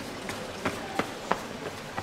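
Quick footsteps on a paved stone street, sharp steps about three a second, over a steady hiss of street noise.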